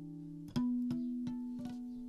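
Instrumental music: plucked guitar notes over a held low note. A louder note is struck about half a second in and rings on, fading, while a few lighter notes are picked over it.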